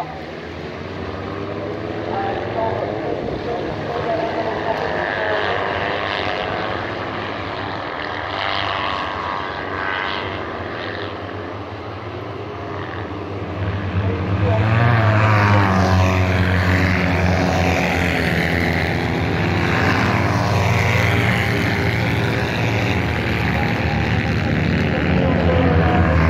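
Kart-cross karts with Citroën 2CV 602 cc air-cooled flat-twin engines racing on a dirt track, their engines revving up and down through the gears and corners. The sound grows louder a little past halfway as the karts come closer.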